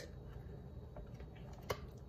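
Faint handling of a cardboard board book as a page is turned, with a small sharp click near the end.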